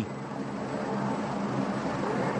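Steady aircraft engine drone with a low hum, the kind of field sound heard under aerial race pictures.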